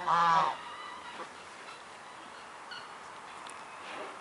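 A single short honking animal call, about half a second long, right at the start, followed by quiet outdoor background.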